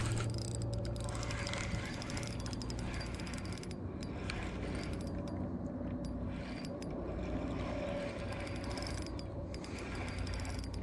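Spinning reel being cranked, its gears giving a fast run of ticking clicks in three spells with short pauses between them, over a low steady hum.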